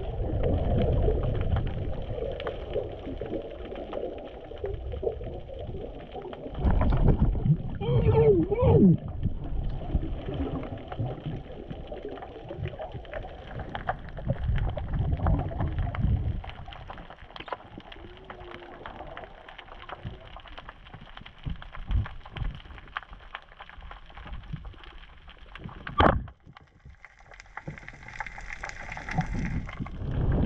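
Muffled underwater sound through a diving camera: low water rumble, with a muffled voice-like glide about eight seconds in. Near the end, a single sharp snap of a speargun firing, followed by a hiss.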